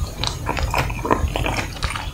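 Close-up wet mouth sounds of licking and sucking on a strawberry ice cream bar: a quick run of smacks and clicks.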